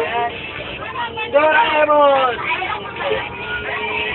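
A group of teenagers chattering and shouting inside a bus, with one long drawn-out call about a second and a half in, over the steady running noise of the bus.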